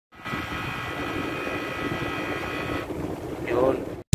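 Window-type air conditioner running: a steady machine hum with a high whine that fades out about three seconds in. Its thermostat has failed, so the unit keeps running and ices up its coil.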